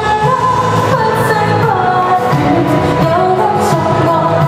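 A woman singing a Cantopop ballad live into a handheld microphone over accompanying music, holding long notes that glide between pitches.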